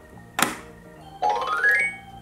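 A sharp click about half a second in, then the electronic ice cream cart toy plays a synthesized sound effect that rises in pitch.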